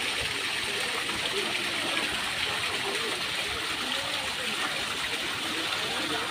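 Water from a small rock-grotto fountain pouring and trickling down the rocks, a steady even splashing hiss.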